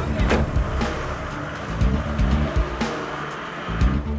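A Ford van's engine revving as the van pulls away, under background music, with a sharp knock just after the start.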